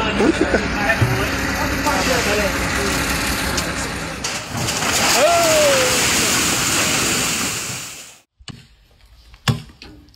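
People's voices over a loud, steady rushing noise, with a shout about five seconds in; the noise cuts off just after eight seconds. Then two sharp blows, an axe striking a log.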